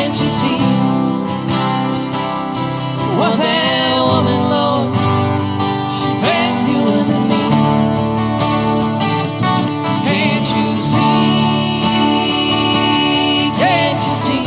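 Live country-rock band playing an instrumental passage on guitars, strummed acoustic guitars under lead notes that bend up and down in pitch several times.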